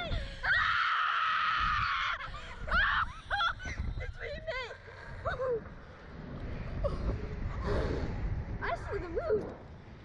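Two young riders screaming on a slingshot (reverse-bungee) ride in flight. A long, high scream comes about half a second in, followed by shorter rising and falling shrieks and gasps. Steady wind rush buffets the microphone under the voices.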